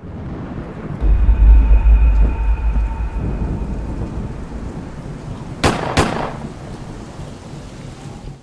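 Thunderstorm sound effect for a logo outro: a deep rumble with a rain-like hiss swells up about a second in, two sharp cracks come close together a little past halfway, and the rumble then fades away. A faint held tone sits over the rumble for the first few seconds.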